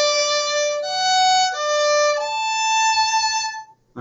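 Violin played with a clean bowed tone: four sustained notes with smooth crossings between strings, the last one held longest before stopping shortly before the end. The clean tone comes from crossing strings with the arm and a bow grip that is not too tight.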